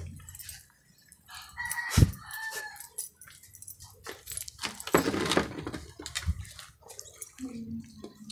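A rooster crowing once in the background, a single call lasting about a second, over small clicks and rustles of hands working thin wires onto battery terminals, with a sharp knock about two seconds in.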